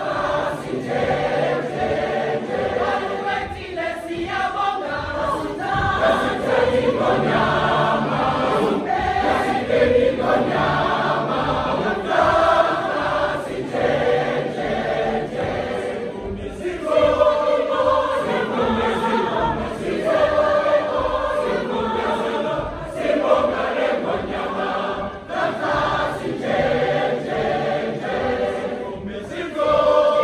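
A large gospel choir of women's and men's voices singing together, with hand clapping.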